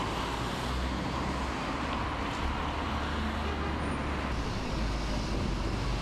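Steady road traffic noise, a continuous low rumble of passing vehicles with no single event standing out.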